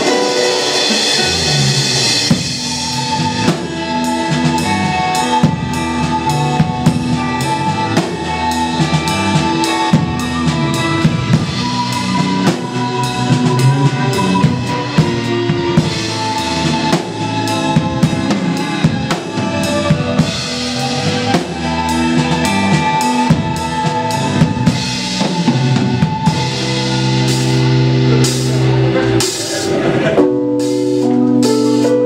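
Live instrumental progressive rock band playing: a drum kit with busy bass drum, snare and cymbal strokes over held notes from the rest of the band, the low notes growing stronger near the end.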